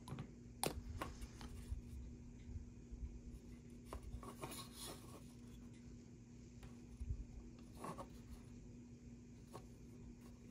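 Quiet, intermittent rubbing and scratching of sandpaper on a plastic 1/25-scale model car body, with a few light clicks from handling the part, over a faint steady hum.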